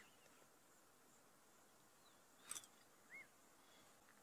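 Near silence broken by a few faint, short bird calls: a brief chirp with a click about two and a half seconds in, and a single arched note just after three seconds.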